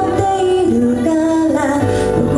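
A woman singing into a microphone over instrumental accompaniment, holding notes with small bends in pitch.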